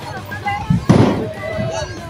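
Two sudden bangs in quick succession about a second in, a lower thud followed by a louder, sharper bang.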